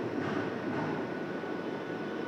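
Steady room noise: an even hiss with a faint high whine running through it.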